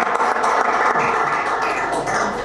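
Audience applauding, a steady round of clapping.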